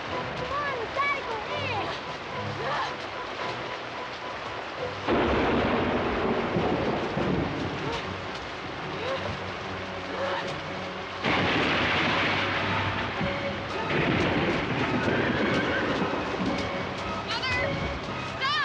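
Thunderstorm with heavy rain hissing steadily, and thunder crashing in twice, about five seconds in and again about eleven seconds in.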